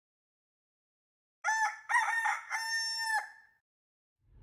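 A rooster crowing once, a cock-a-doodle-doo of a few short syllables ending in a long held note.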